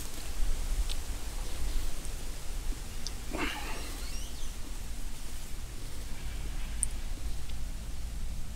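Quiet outdoor woodland background with a steady low rumble, and one brief faint sound about three and a half seconds in.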